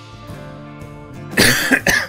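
Background music plays steadily, then a person coughs loudly into the microphone about one and a half seconds in, a long cough followed by a shorter one.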